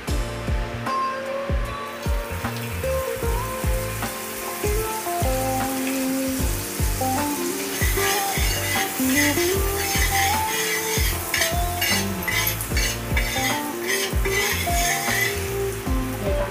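Butter melting and sizzling on a hot tawa griddle, spread with a steel spatula; the sizzle grows louder and more crackly from about halfway through. Background music with a steady beat plays throughout.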